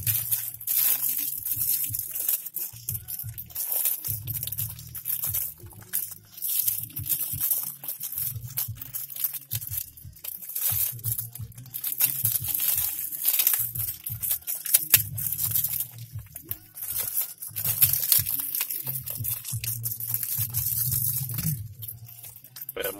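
Foil and plastic packaging crinkling and tearing as it is unwrapped by hand, in many short crackles, over background music.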